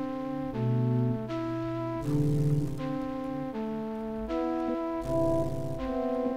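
Layered synthesized flute melody, an FM flute patch played from a MIDI keyboard in FL Studio, with sustained lower notes underneath. The notes change about once a second.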